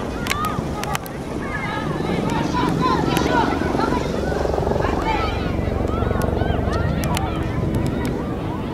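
Wind rumbling on the microphone, with many short calls and shouts from players and coaches carrying across a football pitch.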